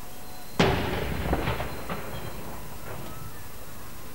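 A King's Troop 13-pounder field gun firing a blank round in a 21-gun salute: one sharp report about half a second in, then a rolling echo that dies away over about two seconds.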